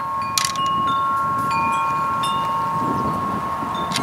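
Metal wind chimes ringing: several long, clear tones strike at different moments and overlap as they fade. A sharp click comes about half a second in and another near the end, and light wind brushes the microphone.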